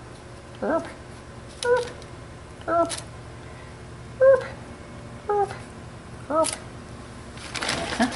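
A household pet giving short, repeated whining cries, about one a second, each rising and falling in pitch. A rustle of a paper sugar bag comes near the end.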